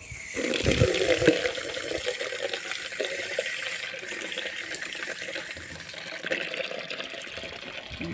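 Water pouring and splashing onto potted plants as they are watered. The hiss is a steady rush that sets in suddenly and eases slightly after the first couple of seconds.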